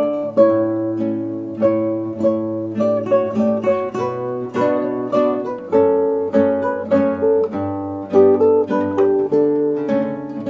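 A classical guitar ensemble of nylon-string guitars playing together, plucked notes and chords ringing out and dying away at a slow, even pace.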